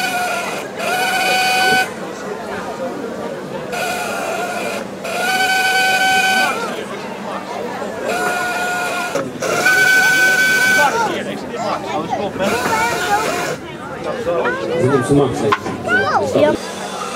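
Compressed air hissing with a steady whistling tone as a rescue lifting cushion under a car is inflated in short bursts, about a second each, in pairs roughly every four and a half seconds.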